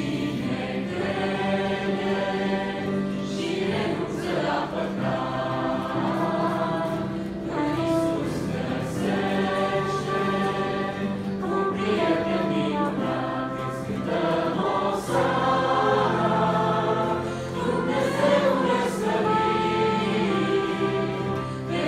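A church congregation and choir singing a Romanian worship song together in sustained, held notes, with steady low instrumental notes underneath.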